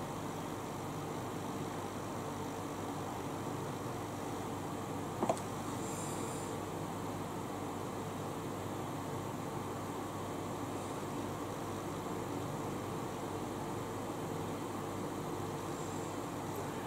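Electric fan running with a steady whirr and a faint constant hum, with one short tap about five seconds in.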